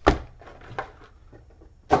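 Foil-wrapped trading card packs being dropped onto a tabletop pile: a sharp slap just after the start and a lighter one partway through.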